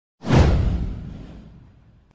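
Intro whoosh sound effect with a deep low boom underneath, sweeping down in pitch as it hits and fading away over about a second and a half.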